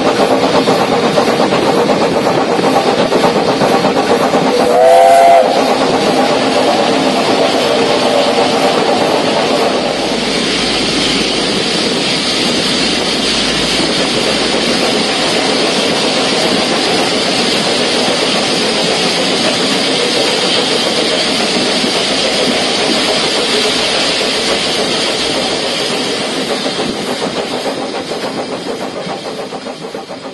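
SECR P class 0-6-0 tank steam locomotive running, heard from the footplate, with one short blast of its steam whistle about five seconds in. From about ten seconds the running sound changes as the engine enters the tunnel, and it fades out near the end.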